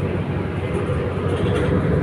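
Steady, low running noise of a moving transit bus, heard from inside the passenger cabin.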